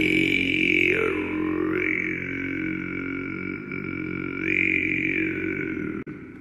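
Didgeridoo drone held on one low note, its bright overtone sweeping down and back up as the mouth shape changes, stopping abruptly at the end.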